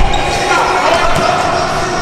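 Basketball bouncing on a hardwood gym floor during a pickup game, with players' voices in the background.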